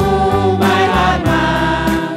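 A small worship choir of men's and women's voices singing a hymn together, with keyboard accompaniment under them.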